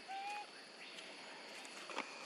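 Quiet outdoor ambience with a steady faint hiss, broken near the start by one short, even-pitched animal call about a third of a second long. A brief click follows near the end.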